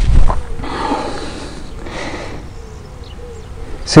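Wind rumbling on the microphone near the start, then soft hissing gusts of outdoor wind that die down toward the end.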